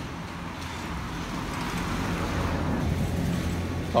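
Road traffic: a steady engine hum and road noise that grow gradually louder across the few seconds, as of a motor vehicle drawing near.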